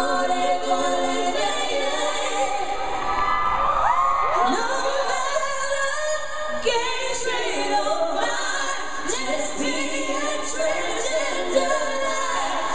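Female lead vocalist singing live in a gospel, a cappella style, holding long notes and sliding through runs over backing singers.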